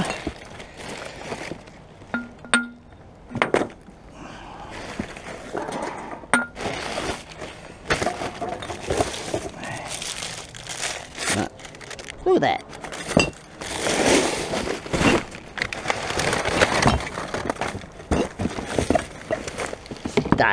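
Rummaging through rubbish in a dumpster: plastic bin bags and cardboard rustling and crinkling, with glass bottles clinking and many short knocks.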